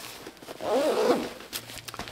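Hook-and-loop (Velcro) closure on the inside of a GORUCK Rucker 4.0 rucksack being ripped apart as an interior panel is pulled open: a rasping tear about half a second in, then a few short tears near the end.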